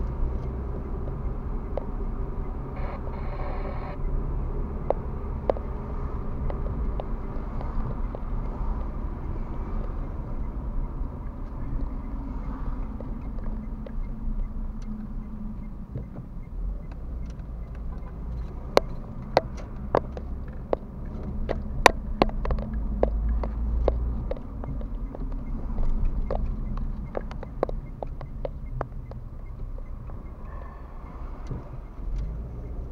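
A car driving through town, heard from inside the cabin: a steady low hum of engine and tyres. In the second half come a run of sharp clicks and knocks, the loudest of them a few seconds after the middle.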